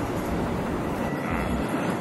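Light-rail trolley running past on street tracks: a steady rush of rolling noise, with a faint high tone briefly after about a second.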